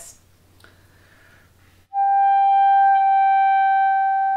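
Clarinet, after a brief quiet breath, starting a single held note in the upper clarion register about halfway in and sustaining it at one steady pitch. It is a voicing exercise: the note is held up on its upper partial without the lower fundamental speaking.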